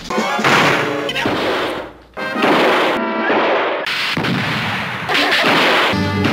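Cartoon slapstick crash and smash sound effects, about five loud ones in quick succession, over a cartoon music score.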